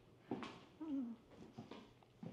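Footsteps on a hard floor, a few sharp steps, with a short wavering whine that falls in pitch about a second in.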